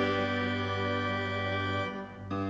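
Organ holding one sustained chord of hymn accompaniment, easing off briefly near the end.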